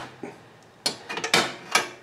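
Steel bypass pin rod of a Husqvarna lawn tractor's hydrostatic transmission being pulled out, giving a few short metallic clicks and scrapes starting about a second in. Pulling the pin frees the hydrostatic transmission so the tractor can be pushed.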